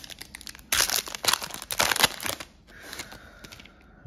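Foil trading card pack being torn open: a run of loud crinkling and tearing about a second in, fading to softer crinkling past the middle.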